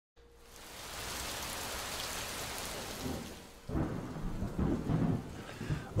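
Rain hiss fading in over the first second, then low rolling rumbles of thunder starting a little past halfway.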